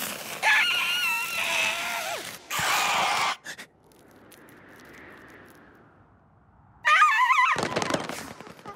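An animated ostrich character's wordless cartoon cries with a wobbling pitch, starting about half a second in and lasting over a second. A short noisy burst follows, then a faint soft whoosh in the middle, and near the end another loud, wobbling cry.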